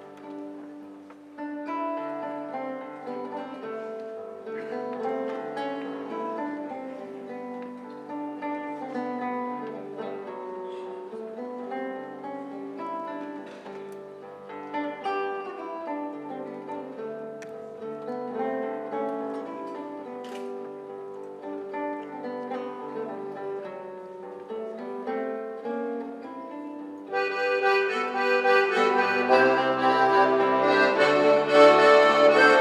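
Nylon-string classical guitar fingerpicking a gentle barcarola introduction over a lower bass line. About 27 seconds in, the full folk ensemble comes in louder, with accordion.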